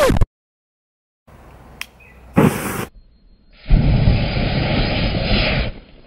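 An aerosol can sprayed through a lighter's flame, its spray catching fire: a click, a short burst, then a steady rushing hiss of burning spray for about two seconds that cuts off near the end.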